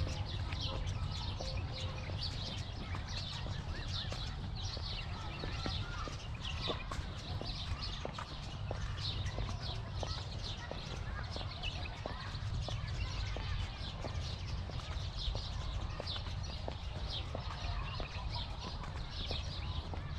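Many small birds chirping steadily among the palms, over footsteps on paving tiles at a walking pace, about two a second. A low wind rumble on the microphone runs underneath.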